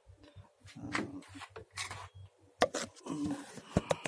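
Handling noise from a phone camera being moved and set in place under a car's bonnet: scattered rubbing and clicks, with a sharp knock about two and a half seconds in and another near the end.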